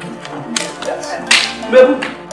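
Film soundtrack music with pitched instruments and a regular percussion beat, cut by sharp, crack-like noisy hits about half a second and a second and a half in, the loudest moments.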